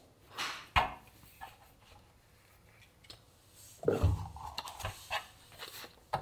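Scattered handling sounds at a scroll saw that is not running, as the blade is handled and set: a sharp click about a second in, a few faint ticks, then a cluster of knocks and rustles in the second half.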